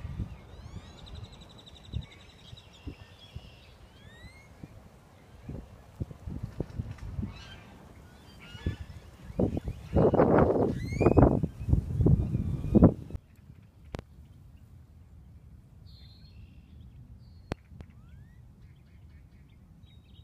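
Lakeside outdoor ambience with wild birds chirping and calling, many short rising chirps in the first few seconds over a low steady rumble. A louder stretch of sound comes about ten seconds in, and the rest is quieter with only a few scattered chirps.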